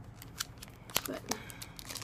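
Clear plastic packaging of a pack of journaling cards crinkling and clicking as it is handled and turned over, with a few sharp clicks, the loudest about a second in.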